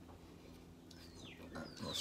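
Two faint squeaks, each falling in pitch, about a second in and again near the end, as a screw clamp is tightened down on a set square.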